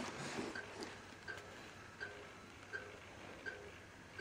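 VHF telemetry receiver sounding a wildlife radio collar's signal: short, faint beeps at a steady pace, about one every three-quarters of a second.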